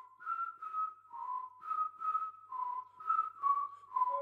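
Whistled melody opening a song, moving back and forth between two close notes in short, evenly paced phrases with audible breath.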